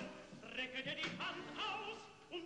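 Music with operatic-style singing, the voice wavering in a wide vibrato across several short phrases.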